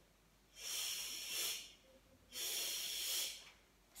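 A woman breathing out forcefully twice, each breath about a second long with a short pause between, exhaling with the effort of an abdominal exercise.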